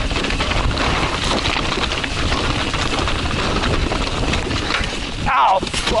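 Full-suspension mountain bike (a Yeti SB140) rattling and clattering as it rides fast over loose, chunky rock, a dense run of small knocks from tyres, chain and suspension, with wind rushing on the microphone. A short 'whoa' near the end.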